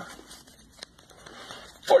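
Faint rustling of a stack of Pokémon trading cards being handled and shuffled in the hands, with one sharp card click a little under a second in. A voice shouts just before the end.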